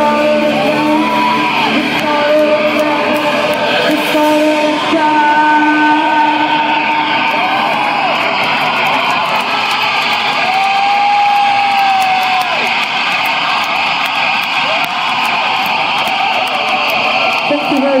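A live rock band finishing a song: held guitar and bass notes ring out for the first few seconds. Long sliding, arching tones then sound over a loud, dense wash of amplified noise and room sound.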